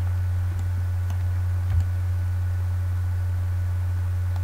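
Steady low electrical hum on the recording, with a few faint computer mouse clicks about half a second, one second and just under two seconds in.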